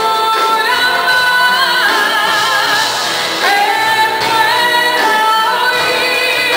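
A woman singing into a microphone, amplified, over a live band with bass guitar; she holds long notes with vibrato about two to three seconds in.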